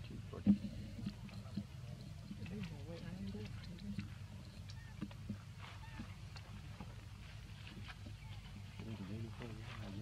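Indistinct background voices murmuring, with scattered small crackles and one sharp tap about half a second in.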